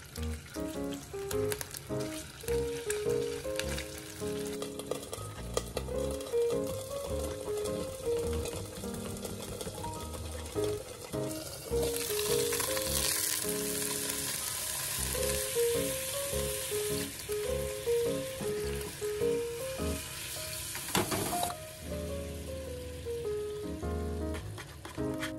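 Blocks of tofu frying in a non-stick frying pan. The sizzle grows loud and bright about halfway in, then stops suddenly with a knock a few seconds before the end. Light background music with a melody plays throughout.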